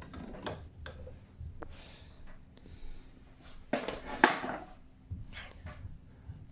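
Scattered light knocks and clicks of work in an opened ceiling, with a short rustling scrape about four seconds in, over a faint steady hum.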